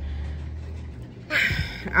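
Low, steady engine rumble of distant bulldozers clearing snow, with a short rushing noise near the end.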